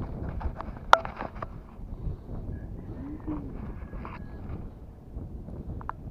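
Wind rumbling on the microphone outdoors, with one sharp click about a second in and a few faint, brief chirp-like tones.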